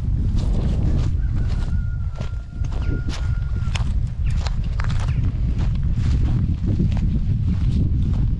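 Wind rumbling on the microphone, with irregular crunching clicks of footsteps on dry brush and ground. A thin steady whistle-like tone sounds faintly for a couple of seconds about a second in.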